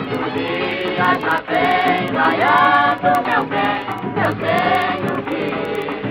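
Music: a group of women's voices singing together over instrumental accompaniment, in the style of a 1950s Brazilian popular song.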